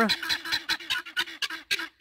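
Helmeted guineafowl calling: a rapid string of sharp, clipped notes, about six or seven a second.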